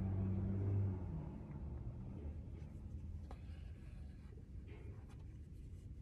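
Faint rustling and small clicks of hand-sewing: needle and thread pulled through the thick cotton of overalls while a button is stitched back on. A low steady hum fades out about a second in.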